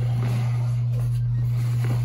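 A steady low hum under faint rustling and handling noise from a nylon duffel bag being picked up.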